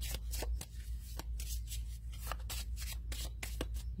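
Cards of a small oracle deck being shuffled and flicked through by hand: a quick, irregular run of papery snaps.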